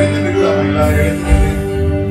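Live church worship band music, with an electric bass guitar under held chords and a steady beat.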